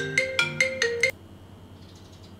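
A quick melody of marimba-like struck notes, about five a second, like a phone ringtone, that cuts off suddenly about a second in. A faint steady high whine is left.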